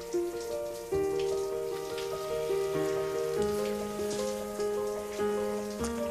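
A steady spray of running water under background music of slow, held notes that change about every second.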